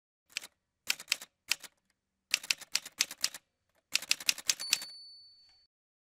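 Manual typewriter keys struck in several quick bursts, followed near the end by a bell ring that fades away.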